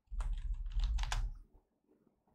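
Computer keyboard being typed on in a quick run of several keystrokes, entering a stock ticker symbol, with a low thump under the strokes. The typing stops about a second and a half in.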